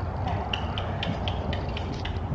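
Horse trotting under a rider: a rhythmic patter of light clicks, about four a second, over a low rumble.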